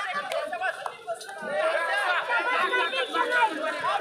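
Overlapping chatter: several voices talking over one another, with no single speaker standing out.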